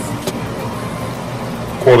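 A steady low hum with hiss, unchanging, then a man starts speaking near the end.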